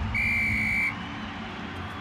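Referee's whistle blown once, one steady shrill blast of under a second, signalling half-time.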